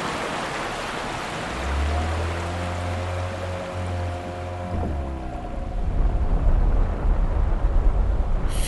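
Sea-surf sound effect washing in and fading, with a steady low hum held from about two to five seconds in. Then an uneven low rumble, like a boat's motor, grows louder toward the end.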